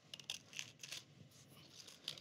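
Small kitchen knife cutting the leaves off a head of cauliflower: faint, crisp snaps and scrapes as the blade goes through the firm leaf stalks.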